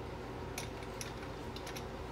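Low steady room hum with a few faint, light clicks of kitchen utensils being handled.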